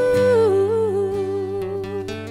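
A woman's voice holds a long sung note that steps down to a lower pitch about half a second in and holds there with a light vibrato. Two acoustic guitars are strummed underneath.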